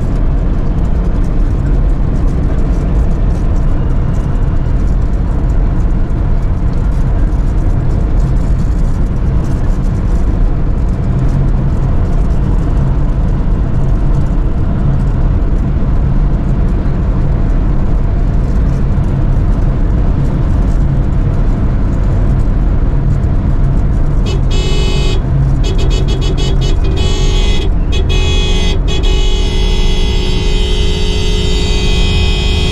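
A car driving at speed on an asphalt highway: a loud, steady low rumble of road and wind noise. About 24 seconds in, a sustained high tone with several pitches joins it and runs on to the end.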